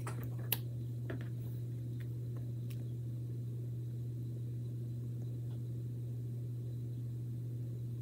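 Steady low hum of room background, with a sharp click about half a second in and a few faint ticks of hands handling and pressing down a plastic stencil transfer sheet.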